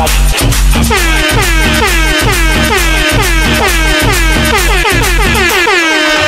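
Tribal guaracha electronic dance music with a steady bass beat. From about a second in, a pitched effect sweeps downward over and over, about three times a second. Near the end the bass drops out and a held tone remains.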